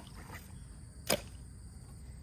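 Soil and gravel being dug by hand from a riverbank into a plastic gold pan, with one short sharp knock about a second in as a clump lands.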